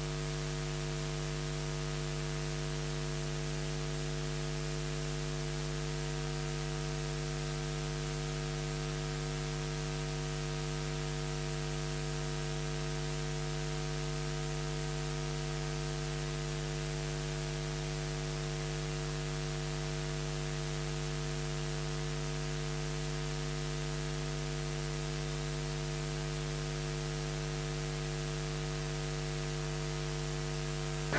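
Steady electrical mains hum with many evenly spaced overtones and a layer of hiss, from the audio feed while the microphone is switched off.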